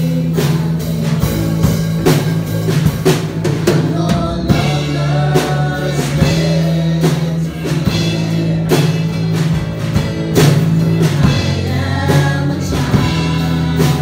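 A worship band performing a song: several voices singing together over electric bass, acoustic guitar and drums keeping a steady beat.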